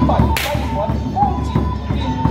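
A single sharp swish-crack about half a second in as a martial artist swings and snaps a flexible whip-like weapon. Steady drumming and music run underneath.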